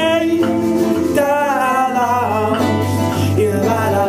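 A young man singing an Icelandic pop song with a wavering, vibrato-laden voice over live acoustic accompaniment that includes a glockenspiel; a low bass note is held from about halfway through.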